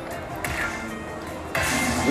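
Slot machine's hold-and-spin bonus round music and sound effects as the reels respin, with a sudden rise in level about half a second in and again near the end.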